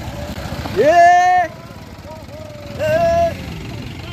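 Voices shouting from a moving utility vehicle over its running engine: one long held shout rising into a steady pitch about a second in, and a second, shorter call near the end.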